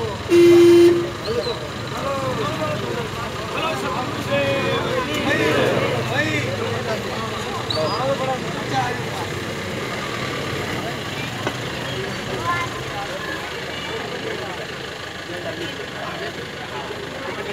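A vehicle horn sounds one short, loud, steady blast about half a second in. After it comes the chatter of a crowd of people talking at once.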